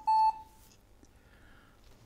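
IBM ThinkPad R40's internal speaker giving two short, high-pitched beeps right at the start, then near silence. The beeps are the POST error signal that comes before the '0200 Failure Fixed Disk' message: the hard drive has failed.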